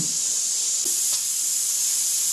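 Steam hissing steadily from the safety vent of an Eco Magic Cooker flameless heating container as its heating pack reacts with water, a steady high hiss that gets a little stronger about a second in. This venting is the normal sign that the heating reaction is under way, not a fault.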